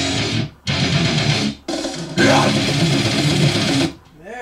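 Distorted death metal guitar track playing loud over studio monitors. It breaks off abruptly twice in the first two seconds, in a stop-start riff, then cuts off just before the end.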